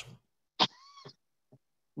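A brief, faint high-pitched call about half a second long, rising then falling in pitch, starting with a sharp click-like onset.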